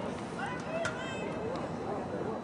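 Several distant voices calling out across an outdoor sports field, over a steady background of crowd noise.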